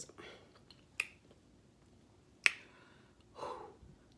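Eating by hand: two sharp clicks, one about a second in and a louder one about two and a half seconds in, then a short mouth noise as a piece of fried salmon croquette is lifted to the lips and bitten.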